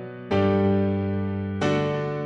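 Electronic keyboard playing in a piano voice: a chord struck about a third of a second in, and another about a second and a half in. Each one rings and fades slowly.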